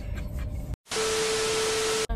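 TV-static transition sound effect: about a second in, after a brief dropout to silence, a loud, even hiss of static begins, with a single steady beep tone held under it.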